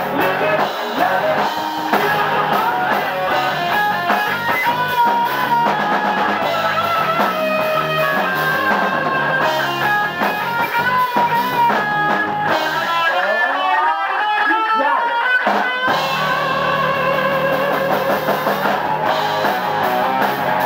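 Rock band playing in rehearsal: electric guitar, electric bass and drum kit. About twelve seconds in, the low end drops out for roughly three seconds, leaving the guitar alone with gliding notes, and then the full band comes back in.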